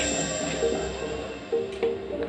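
Background instrumental music with held notes that change from note to note, fading slightly toward the end.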